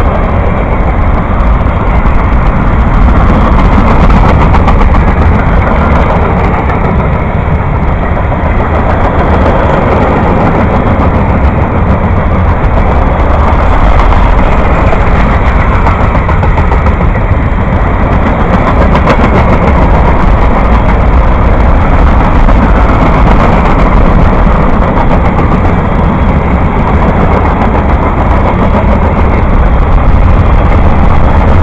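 Long freight train of tank cars, gondolas and boxcars rolling past close by: a loud, steady rumble of steel wheels on rail.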